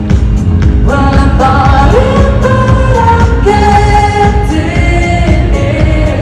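Loud live pop music from an arena concert sound system, with a steady beat. Held sung notes come in about a second in.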